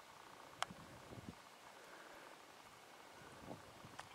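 Near silence: faint outdoor room tone, with one sharp faint click about half a second in and a few soft rustles.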